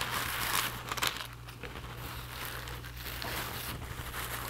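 Rustling and crinkling of a rolled-up woven straw hat being handled and unrolled, busiest in the first second or so and softer after.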